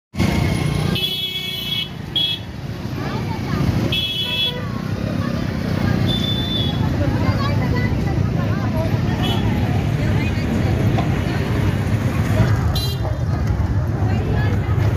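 Busy street crowd chatter with traffic, and vehicle horns tooting several times in short blasts, the longest about a second in and about four seconds in.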